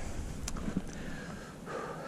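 A man breathing close to the microphone, with a single faint click about half a second in.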